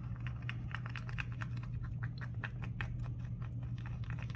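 Wooden craft stick stirring and scraping around a small plastic cup of resin and peach mica colouring: a quick, uneven run of light ticks and clicks, several a second.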